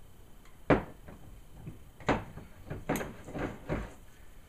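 Glass liquor bottles handled on a bar countertop, the liqueur bottle being capped and set down and the next bottle picked up: a sharp knock under a second in, then four more clunks and knocks in the second half.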